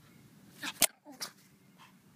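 Chihuahua giving a quick run of short, high yaps about halfway through, with a very sharp, loud snap in the middle of the run.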